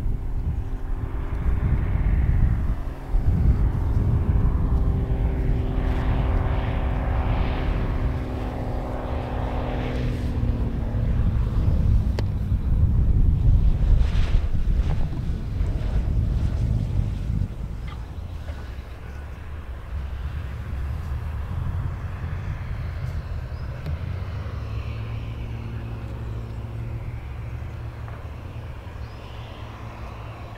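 Cirrus SR22T's turbocharged six-cylinder engine and propeller droning at low power on final approach, over a steady low rumble. Its pitch sinks slowly as the plane comes in close. The sound drops off a little past halfway and fades as the aircraft rolls away down the runway.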